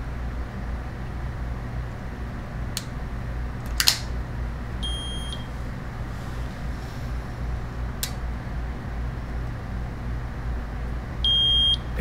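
Keto-Mojo blood glucose meter beeping twice: a short high beep about five seconds in, and a louder one near the end as the reading comes up. A few sharp clicks come earlier, over a steady low hum.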